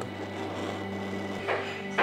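Background music with steady held low tones, joined near the end by sharp clicks about half a second apart.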